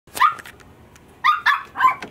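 Cavalier King Charles Spaniel puppy barking: four short, high-pitched barks, one near the start and three in quick succession about a second later.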